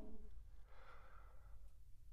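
The trailing end of an echoing voiced 'oh' dies away at the start, followed by a faint breath, then near quiet.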